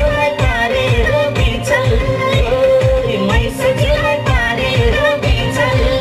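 A woman singing a Nepali folk-pop song live into a microphone over accompaniment with a steady drum beat, heard through stage loudspeakers.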